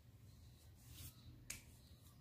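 Near silence: room tone, with one sharp click about one and a half seconds in and a fainter one half a second before it.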